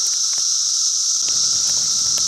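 A dense, steady chorus of periodical cicadas, an extremely loud high-pitched hiss, with a few faint crackles from a small kindling-and-cardboard fire as it catches.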